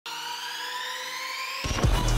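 Edited-in electronic music intro: a sustained synth tone slowly rising in pitch, then a deep falling bass drop near the end as the beat comes in.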